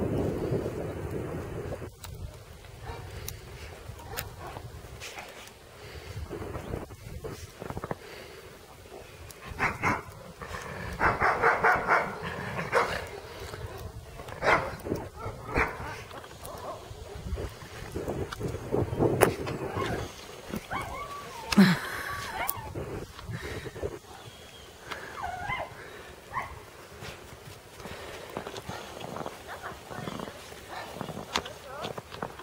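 Tajik native shepherd dogs giving scattered barks and yelps, the busiest run about ten to thirteen seconds in and a sharp one a little past twenty seconds, with wind buffeting the microphone during the first couple of seconds.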